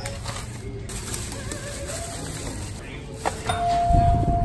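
Plastic shopping bag handled at a shop checkout over faint background voices, then a single steady electronic beep tone held for over a second near the end.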